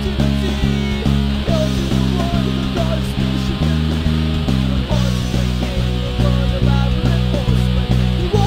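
Indie rock band playing an instrumental passage with no singing: electric guitars and bass moving through chords in a steady, even rhythm.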